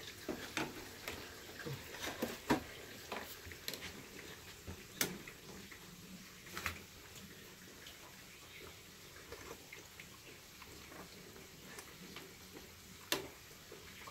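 Scattered light clinks and taps of a metal ladle against a soup pot, its lid and a small ceramic dish as miso soup is ladled out and tasted, the sharpest about two and a half seconds in and near the end, over a faint steady bubbling of the simmering soup.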